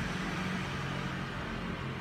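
Steady urban background noise: an even low hum with hiss.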